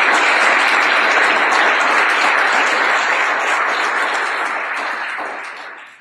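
Audience applauding: a dense, steady clapping that fades out near the end.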